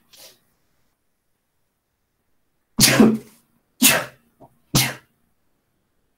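A man sneezing three times in a row, about a second apart, starting about three seconds in.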